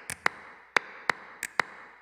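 About seven sharp clicks at uneven intervals, each with a short echoing tail, over a faint steady hiss.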